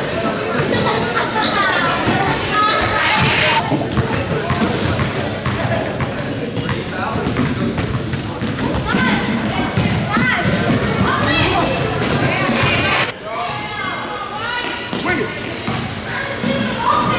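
A basketball bouncing on a hardwood gym floor amid a crowd's indistinct chatter and voices in a large hall. The sound changes abruptly about 13 seconds in, at an edit cut.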